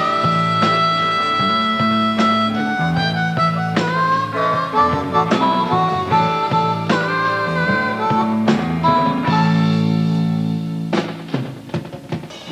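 Harmonica solo, cupped against a vocal microphone, playing held and bending notes over a rock band with guitar and drums. The band drops back near the end.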